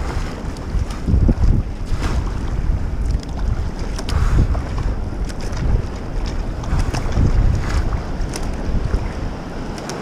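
Rushing whitewater around a kayak in a fast, high river rapid, with scattered splashes from paddle strokes and the hull through the waves. Wind buffets the microphone in gusts, adding a heavy, uneven low rumble.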